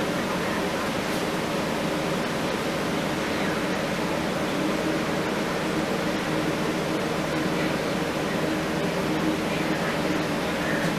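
Steady background noise: an even hiss with a low hum beneath it and no distinct events.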